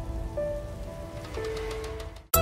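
Cinematic logo-sting sound design: sustained synth notes that shift pitch a couple of times over a low rumble and a faint crackling, rain-like texture, with a few faint sparkling ticks near the end.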